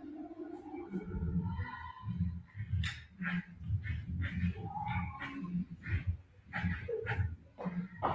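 Indistinct voices talking in the room, a run of speech that comes through as no clear words.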